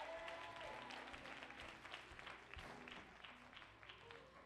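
Church congregation applauding, the scattered claps thinning out toward the end.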